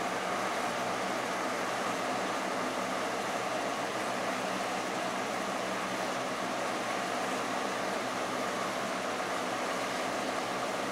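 Electric room fan running steadily: a constant noise with a faint hum in it.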